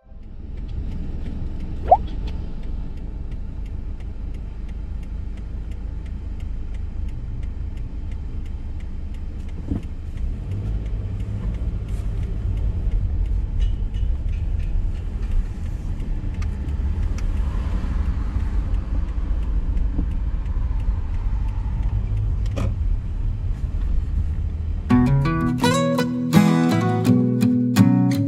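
Car driving, heard from inside the cabin: a steady low road and engine rumble, with a sharp click about two seconds in and a few fainter ticks later. Acoustic guitar music comes in near the end.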